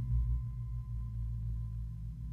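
A low, steady drone with a faint thin steady tone above it.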